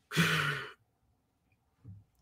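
A man's short breathy sigh, about half a second long near the start, with a faint hum of voice under the breath. Then near silence.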